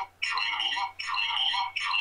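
A man's voice echoing back, thin and tinny, through a phone's speaker from a video call: an audio loop because the phone and the computer are in the same meeting.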